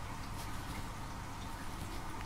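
Faint steady hiss with a few soft ticks: the quiet handling noise of a metal crochet hook and cotton thread being worked.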